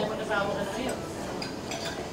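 Light clinks of cutlery against dishes over a faint murmur of voices in a dining room.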